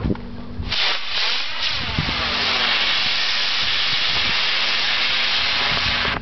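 Model rocket motor on a radio-controlled glider igniting about a second in and burning with a loud, steady hiss for about five seconds as the glider climbs away, stopping at burnout at the very end.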